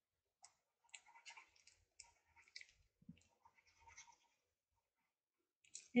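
Faint, irregular scratching and light rustling: the tip of a liquid glue bottle rubbed over paper while the paper piece is handled.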